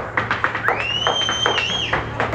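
Irish dance hard shoes striking the stage in a quick, uneven rhythm of sharp taps. A long high whistle glides up and holds through the middle over the taps.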